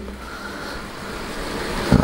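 Atlas N scale two-truck Shay geared locomotive running along the track: a steady, even whirring noise from its motor, geared drive and wheels on the rails.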